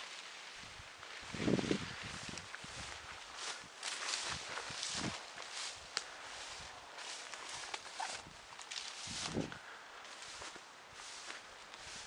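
Footsteps of a person walking outdoors, irregular steps, with two louder dull thumps, one about one and a half seconds in and one near nine seconds.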